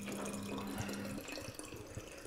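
Vinegar running from the tap of a stainless-steel tank into a small glass bottle: a faint trickle of filling, with a low steady hum that stops a little over a second in.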